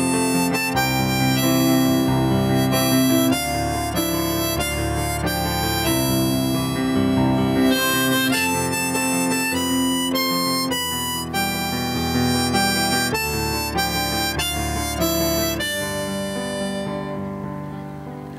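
Harmonica solo played from a neck rack, a melody of held and shifting notes in the instrumental break of a folk song, fading away near the end.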